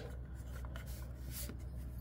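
Hands handling and turning a small plastic toy spaceship: faint rubbing and light handling noise, with one brief brushing sound over a second in.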